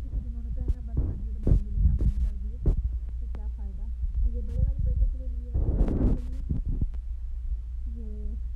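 Close-up handling noise as a T-shirt is spread out by hand: a low steady rumble on the microphone with scattered taps and knocks, and a burst of fabric or plastic-bag rustling about six seconds in. A faint voice runs underneath.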